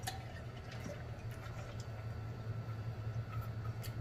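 A person gulping a drink from a large jug, with soft repeated swallows over a steady low hum.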